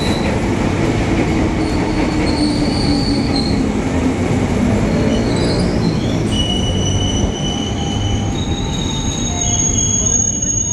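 JR 205 series electric commuter train rolling slowly along the station track, its wheels rumbling on the rails. From about two seconds in, high-pitched wheel squeal rises in several thin tones that come and go.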